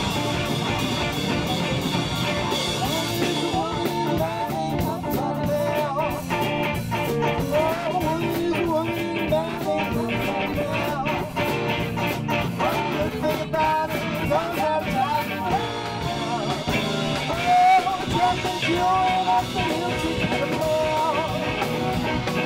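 A live band playing, with a man singing over guitar and drums.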